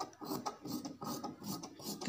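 Tailor's scissors cutting through cloth on a wooden tabletop: a run of quick snips, about four a second.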